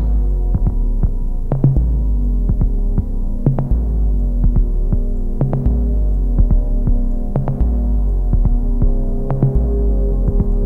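Electronic music: a deep, droning bass that pulses in long swells about every two seconds under steady sustained tones, with sharp clicks and ticks scattered over it.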